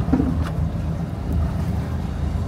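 A boat's engine running with a steady low hum, with wind on the microphone.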